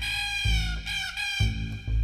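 Comic background music: a low, plucked bass beat under a high melody line that slides and wavers in pitch.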